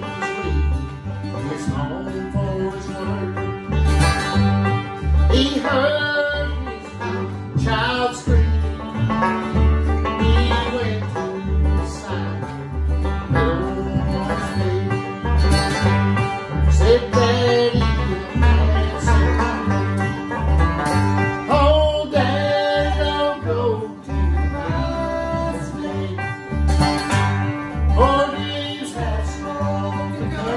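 Live acoustic bluegrass: banjo picking and strummed acoustic guitar over upright bass plucked on a steady beat, with a man singing the melody.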